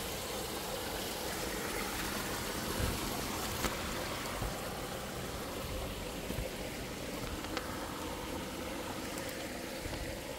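A stream running steadily, with a couple of sharp snaps as the walker moves through dead branches and undergrowth.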